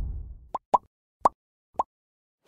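The low rumble of a cinematic logo hit dies away in the first half second, followed by four short, quick pops spread unevenly over the next second and a half: cartoon pop sound effects from an animated outro graphic.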